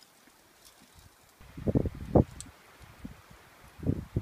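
Wind buffeting the microphone in a brief cluster of low rumbling gusts about one and a half to two seconds in, otherwise faint.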